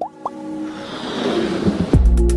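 Electronic intro sting for an animated logo: quick upward pitch glides near the start, then a hiss that swells and builds to a heavy bass hit at the very end.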